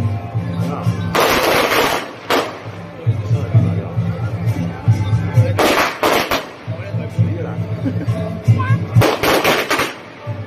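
Strings of firecrackers crackling in three dense bursts, about a second in, around six seconds and near the end, over loud procession music with a low, pulsing beat.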